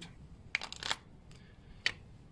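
Timing-belt idler pulley being slid onto its mounting stud over a spacer: a quick cluster of small metal clicks and scrapes, then one sharp click near the end as it seats.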